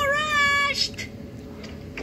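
A cartoon boy's high-pitched, drawn-out wavering squeal, played back through a tablet speaker, breaking off under a second in. A few faint ticks follow.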